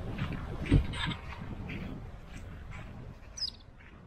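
Strong wind buffeting the microphone in gusts, with one hard thump about three-quarters of a second in, easing off toward the end. Short bird chirps sound over it, including a quick high call near the end.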